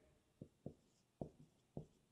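Marker pen writing on a whiteboard: about five short, faint strokes as letters are drawn.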